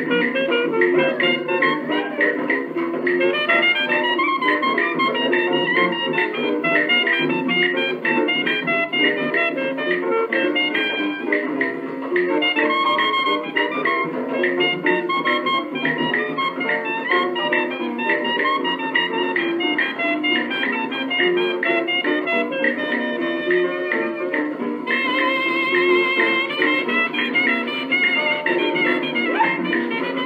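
Instrumental break of a 1950s Jamaican calypso band record, a 78 rpm disc, with no vocal. The sound is thin and narrow, with no deep bass and the top cut off, as on an old 78 transfer.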